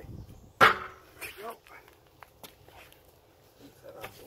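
A dog barks once, loudly, about half a second in, with a weaker follow-up shortly after. A few light knocks follow as the last wheel bolt comes out and the wheel is lifted off the hub.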